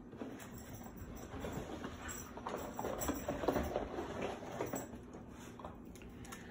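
A Blue Heeler's paws and claws pattering on a hard laminate floor as it trots off to fetch its toy and comes back. The light, quick clicks are busiest in the middle.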